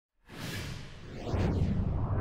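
Logo-intro whoosh sound effect: a rushing swell with a sweeping tone, building into a deep rumble in the second half.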